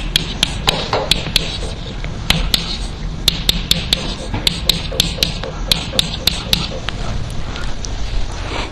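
Chalk writing on a chalkboard: quick sharp taps and short scratches as letters and arrows are drawn, several strokes a second, over a low steady hum.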